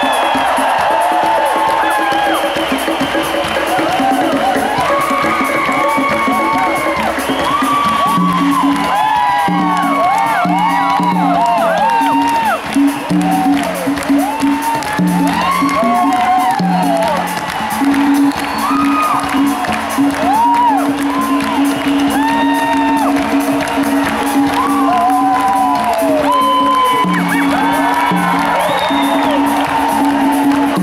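Live rock band playing an instrumental passage with a repeating low riff, while a large audience cheers, whoops and sings along.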